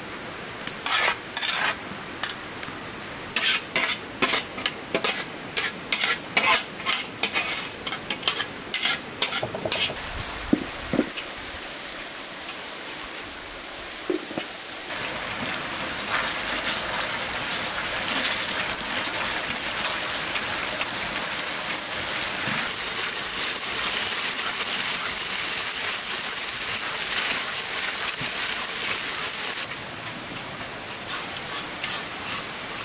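A metal skimmer scrapes and taps through cooked rice in a steel pot, giving many short clicks. From about fifteen seconds in, a tomato sauce sizzles steadily as it fries on a sadj while a wooden masher works it.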